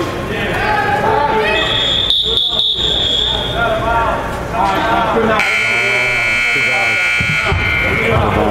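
A referee's whistle blows once, steadily, for almost two seconds. About five seconds in, the arena's scoreboard buzzer sounds for about two seconds and cuts off.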